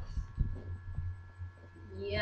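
A few dull low thumps over a steady low electrical hum.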